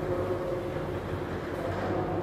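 A steady low mechanical hum, holding several even tones without change.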